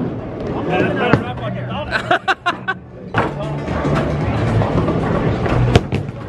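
Bowling alley din: background music and voices over a steady low rumble, with a few sharp knocks, the loudest near the end.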